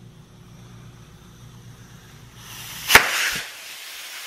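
CO2 hissing out of a vintage CO2 cork-popper's cartridge as it is released, starting about two and a half seconds in and going on to the end, with a single sharp click about three seconds in. The gas will not pass through the needle, so the pressure is being let off rather than driven into the bottle.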